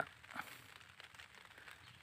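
Faint, brief rustling of chilli plant leaves as a hand grips and turns them, over a quiet outdoor background.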